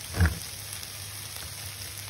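Tin can being opened with a hand-turned side-cutting can opener, with one short low clunk about a quarter second in. Under it runs a steady sizzle of vegetables frying in a pan.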